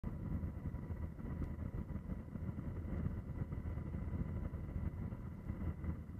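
Steady low rumble of engine and airflow noise from on board the aircraft filming from the air, with a faint steady whine above it.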